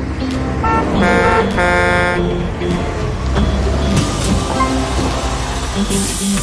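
Cartoon bus sound effects: two horn toots in quick succession about a second in, followed by the low rumble of the bus engine running.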